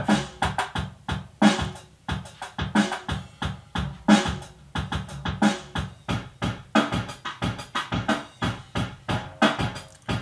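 Alesis DR-5 drum module playing a programmed drum-machine beat on its own, a steady pattern of sharp hits with a heavier hit roughly every one and a third seconds.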